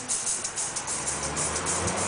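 Live Venezuelan jazz ensemble playing, led by a rapid, steady rhythm of maracas. Low double bass notes join about a second in.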